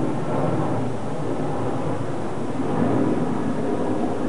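An airliner's jet engines roaring steadily as it flies overhead.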